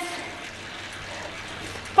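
Steady whirring hiss of an indoor bike trainer being pedalled hard at a high cadence, with a faint low hum underneath.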